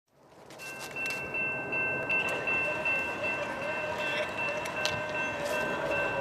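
Railroad crossing electronic bells (a Safetran type-3 and a General Signals type-2) ringing steadily in high tones, fading in over the first second: the crossing is activated for an approaching train.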